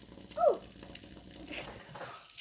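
Small electric motor of a motorized Num Noms toy whirring faintly with a fine ticking, and a sharp click about a second and a half in.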